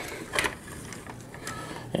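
Hands handling a plastic transforming robot toy: one light plastic click a little under half a second in, then faint rubbing and ticking of plastic parts.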